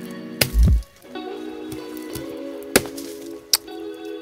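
A few sharp single knocks of a blade striking while cassava roots are dug and cut out of dry soil, with a dull thump about half a second in, over steady background music.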